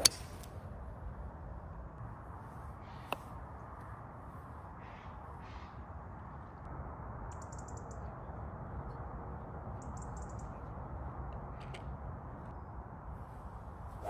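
Steady low outdoor background noise with a sharp click of a golf club striking the ball right at the start and a fainter click about three seconds in. Two short bursts of high bird chirping come around seven and ten seconds in.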